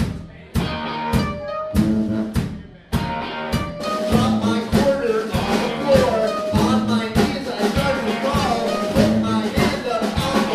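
Live band playing a song on drum kit and tuba, stop-start at first with short breaks between drum strikes and held low horn notes. About four seconds in the full band comes in steadily, with a wavering lead melody over the beat.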